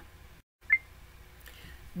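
A single short, high beep about three-quarters of a second in, just after a momentary dropout to total silence; otherwise faint room tone.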